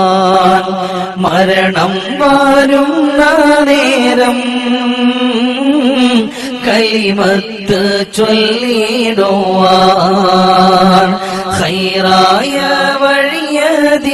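A man's solo voice chanting an Islamic devotional song in Arabic, drawing out long notes with wavering, ornamented pitch, with short breaks between phrases.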